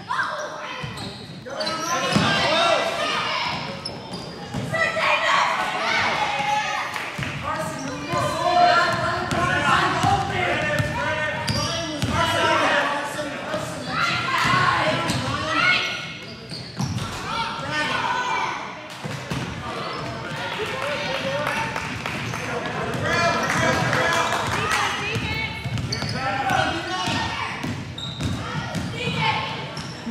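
A basketball bouncing repeatedly on a hardwood gym floor, with indistinct talk and calls from players and spectators throughout, echoing in a large gym.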